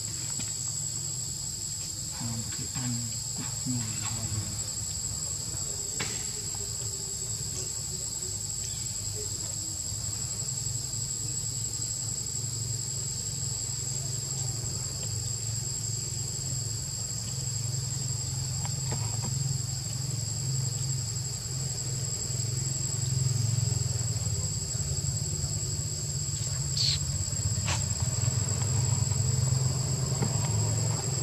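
Steady, high-pitched chorus of insects, two unbroken buzzing tones that go on without pause, over a low rumble. A few sharp clicks, two close together near the end.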